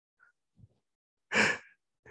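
A man's single audible sigh, a short breathy exhale about a second and a half in, otherwise near silence.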